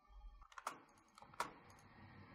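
Computer keyboard keystrokes and mouse clicks, faint: a few light taps and two sharper clicks about three-quarters of a second apart, while entering a command in AutoCAD.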